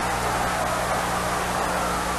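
Steady hiss with a low electrical hum, the background noise of an old film soundtrack.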